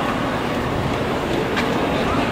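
Steady city street background noise, an even rumble of traffic with no distinct events.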